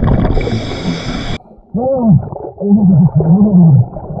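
A scuba diver's muffled voice underwater, heard through the regulator: drawn-out 'oh' exclamations that swoop up and down in pitch, about three of them in the second half. They are preceded by a loud rush of regulator breath and bubbles in the first second or so.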